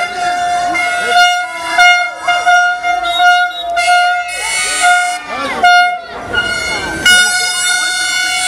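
Plastic fan horns blown in repeated blasts on one steady high note, stopping and starting many times, with a crowd of voices shouting around them.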